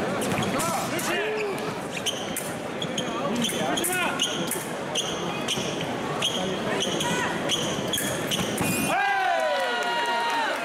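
Foil fencers' shoes squeaking and stamping on the piste during footwork and a lunge, over arena crowd noise. About nine seconds in, the electric scoring machine's tone sounds as a touch registers and is held to the end.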